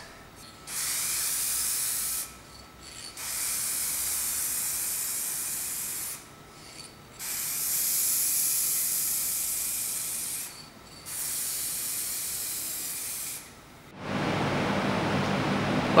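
Aerosol spray can of clear lacquer spraying in four long bursts of hiss, each one and a half to three and a half seconds, with short pauses between. About two seconds before the end a steadier, lower background noise takes over.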